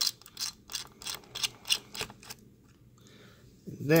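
Precision screwdriver backing out a spring-loaded screw on a laptop's copper-pipe CPU heatsink: a run of light clicks, about three or four a second, that stops a little over two seconds in.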